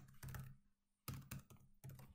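Faint typing on a computer keyboard: a quick run of keystrokes, a short pause, then a few more separate keystrokes.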